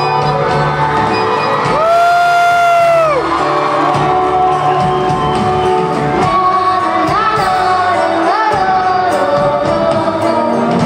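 Live band and singer performing a slow bolero, heard from among the audience. About two seconds in a long high note is held for about a second and falls away at its end, with whoops and cheers from the crowd.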